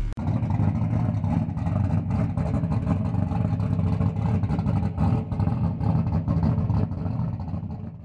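A race car engine running loud and steady, with frequent sharp crackles and clicks through it. It fades out at the very end.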